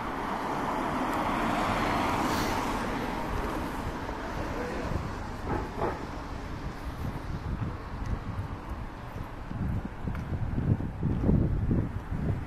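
Street traffic: a car passing, its noise swelling to a peak about two seconds in and fading away. Toward the end, wind buffets the microphone in uneven low rumbles.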